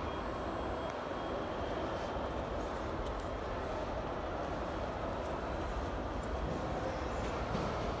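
Steady background noise of a large airport terminal hall: an even low roar of ventilation and distant activity, with no distinct events.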